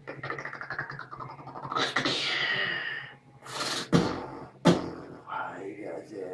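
Solo human beatboxing: a fast buzzing mouth texture, then gliding high-pitched vocal effects, then a few sharp drum-like hits between about three and a half and five seconds in, ending on a pitched vocal sound.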